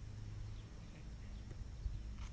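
Low steady outdoor rumble with a few faint, light knocks spread through it, the last and slightly louder one near the end.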